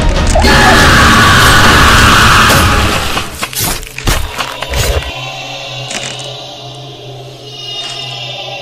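Horror-film jump-scare stinger: a loud, harsh noisy blast lasting about two seconds, then a few sharp crashing hits. From about five seconds in it settles into a steady low drone with quieter eerie music.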